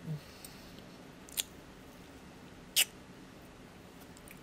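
A spoon clicking sharply twice, about a second and a half apart, as ice cream is eaten; the second click is the louder. A brief low 'mm' at the start.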